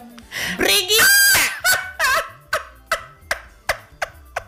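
A man's loud, high-pitched, wavering squeal of laughter, lasting from just after the start to about two seconds in, over a background beat ticking about twice a second.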